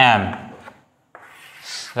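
A click about a second in, then a soft rubbing noise that swells near the end.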